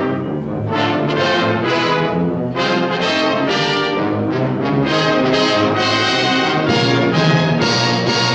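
Orchestral cartoon score led by brass (trombones, trumpets and horns), with a brief break in the phrase about two and a half seconds in.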